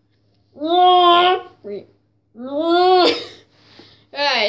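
A girl's voice making two drawn-out wordless vocal sounds, each about a second long with a steady pitch, the second ending in a laugh.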